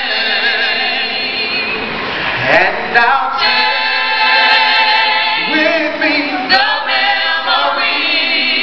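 A small a cappella vocal group singing close harmony into handheld microphones: held chords without words, with a voice sliding up in pitch a couple of times.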